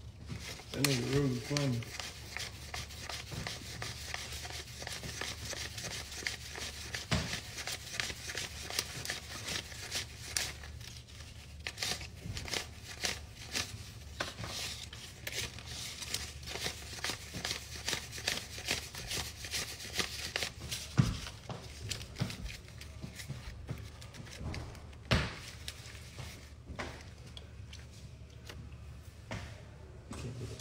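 US paper dollar bills being counted by hand: a fast, continuous run of flicks and crinkles as notes are peeled off a stack, with now and then a louder single snap, easing off near the end.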